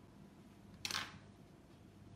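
A single short, sharp handling noise about a second in, a click with a brief rasp, over a faint steady low hum.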